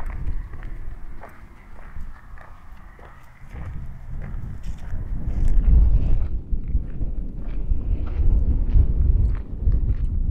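Wind buffeting the microphone: a gusty low rumble that builds about a third of the way in and dominates the rest. Before it, faint footsteps on rough ground.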